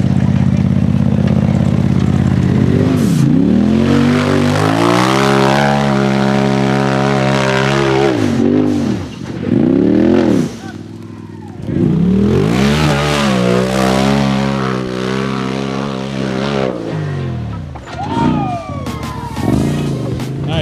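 Polaris RZR side-by-side engine revving hard on a steep dirt hill climb, its pitch held high, then dropping and climbing again several times as the throttle is blipped on and off. It eases off briefly about halfway through.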